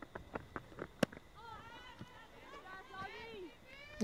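Faint field sound at a cricket ground: a quick series of sharp claps or knocks in the first second, then faint, distant raised voices calling out on the field.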